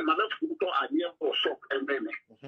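A person talking in quick short phrases, the voice thin and narrow like one heard over a telephone line.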